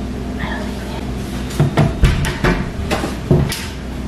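A tall kitchen cupboard door being opened, with a quick run of knocks and clicks from the door and its contents over a steady low hum.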